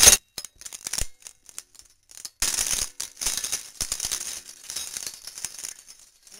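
Walnuts cracking and rattling in a heavy-duty hand-crank nutcracker as it is cranked: a few scattered clicks at first, then from about two and a half seconds in a denser, steady rattle of nuts and shell pieces working through the mechanism.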